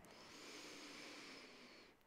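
Near silence with a faint, slow breath in, a soft even hiss lasting almost two seconds, as part of a paced yoga breathing exercise.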